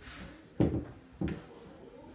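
Two hard knocks, a little over half a second apart, from shoes being handled and set down on a hard surface.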